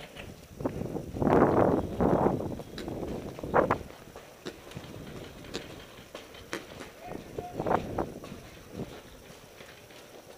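Footsteps on dirt and grass as a paintball player moves between bunkers, with irregular knocks and scuffs, loudest in a noisy stretch a second or two in.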